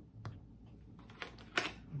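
Large oracle cards being handled and set down on a table: a light tap about a quarter second in, then a few small clicks and a louder slap about one and a half seconds in.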